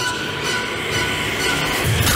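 Horror soundtrack swell: a harsh, screeching drone with a low rumble that builds and grows slightly louder toward the end.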